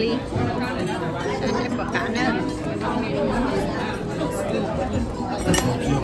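Overlapping chatter of many voices in a busy restaurant dining room, with cutlery and dishes clinking now and then.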